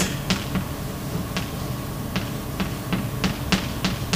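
Chalk tapping on a blackboard as words are written: a string of sharp, irregular taps.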